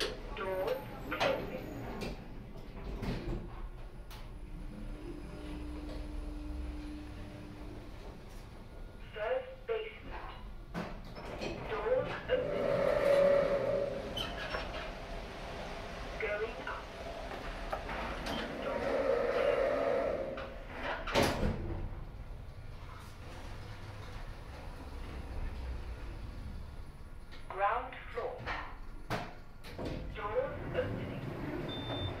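OTIS Gen 2 lift on a trip between floors. Its power-operated sliding doors whine open and then shut, meeting with a single knock, and short recorded voice announcements sound at the stops.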